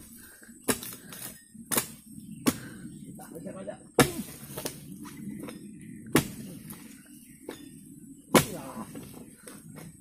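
Long-handled oil palm harvesting blade chopping into the frond bases of a palm trunk: about nine sharp, irregular chops, some close together and some a second or more apart.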